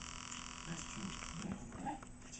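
A small dog making several short, low vocal sounds while playing at a person's feet. A steady high hiss runs beneath and cuts off suddenly about a second and a half in.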